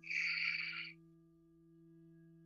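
An audible exhale, a breathy hiss lasting about a second, over soft background music of sustained, bell-like drone tones that carry on after it fades.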